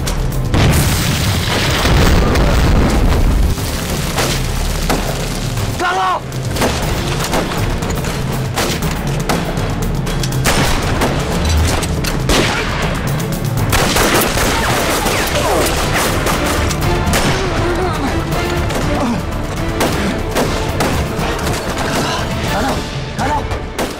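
Battle sound effects of rifle gunfire, with a heavy boom of an explosion in the first few seconds, over a dramatic music score.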